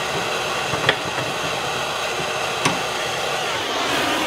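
A MAP gas torch burning with a steady hiss, with two light clicks about a second apart in the middle.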